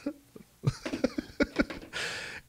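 Choppy, broken-up fragments of a voice coming over an internet call connection that keeps dropping out. The bits start about half a second in and come as short clipped scraps rather than words.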